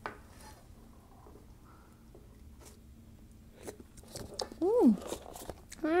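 A wooden spoon stirring a thick cream sauce in a pan: faint scrapes and light clicks, with a few sharper clicks about four seconds in. Near the end come two short hummed "mm" sounds, the first rising then falling in pitch, which are the loudest thing here.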